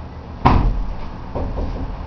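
A sharp bang about half a second in, followed by a few softer thumps about a second later.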